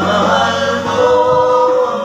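A man singing a Filipino pop ballad into a handheld microphone over backing music, holding a long note about halfway through.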